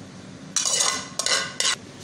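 Metal spoon scraping boiled rice out of a steel pot into a glass dish, in three short scrapes, the first and longest about half a second in.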